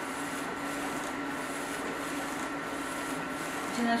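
Airwren LED UV flatbed printer running as it prints: a steady whir from the print carriage shuttling back and forth over the bed, with a faint high whine and a soft swish repeating about every two-thirds of a second.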